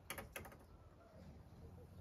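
Near silence, with two brief faint clicks within the first half second.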